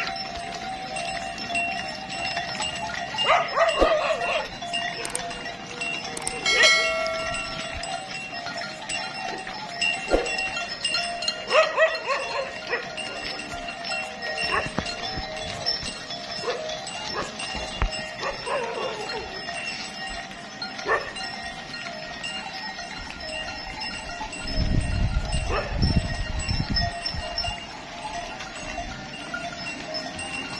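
A herd of Tharparkar cattle moving along a paved road, with several wavering calls from the animals scattered through it. A low rumble rises and fades near the end.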